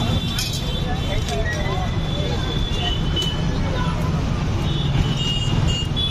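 Busy street ambience: a steady low traffic rumble with indistinct voices of people nearby.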